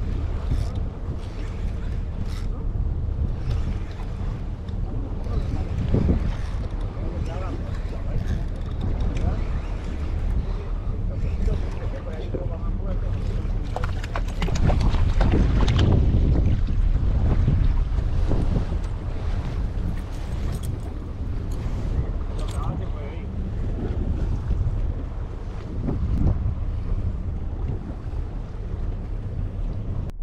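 Wind buffeting the microphone and sea water washing around a small boat, a steady rush with scattered clicks and a louder stretch about halfway through.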